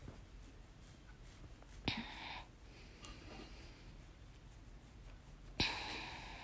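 Faint sounds of a pot of soup boiling on a gas stove. There is a soft knock about two seconds in, and another near the end as a silicone spatula goes into the pot and begins stirring.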